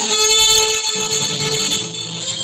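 Cretan bagpipe (askomantoura) starting a kontylies tune, its reedy tone coming in suddenly, with lower strings from the laouto and lyra joining about a second in.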